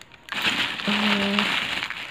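Plastic bags crinkling and rustling as hands rummage through them inside a cardboard parcel box, starting about a third of a second in.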